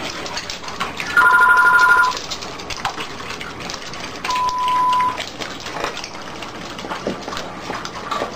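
Dogs eating dry kibble from bowls, a steady run of crunching and clicking. Two steady electronic beeps cut through it: a loud, chord-like tone about a second in that lasts about a second, and a shorter single-pitched tone about four seconds in.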